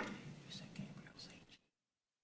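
Low whispering between two people at close range, opening with a sharp knock; about a second and a half in, the sound cuts out to dead silence.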